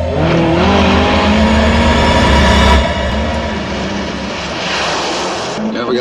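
A car engine accelerating, its pitch rising over about the first second and then holding, with road noise, over sustained music.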